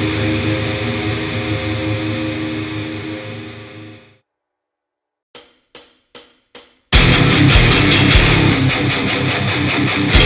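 Hardcore punk band recording: a held distorted guitar chord rings out and fades away, ending one song. After a moment of silence come four quick, evenly spaced count-in clicks, and the full band of distorted guitars, bass and drums starts the next song loud.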